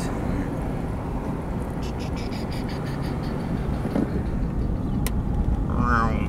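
Car engine and road noise heard from inside the cabin, a steady low rumble. A few light ticks come around the middle, and there is a sharp click about five seconds in.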